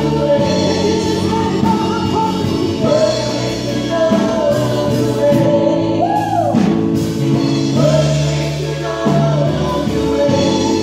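Live gospel worship music: a woman's lead vocal with backing singers, held notes wavering in pitch, over a keyboard and bass guitar band.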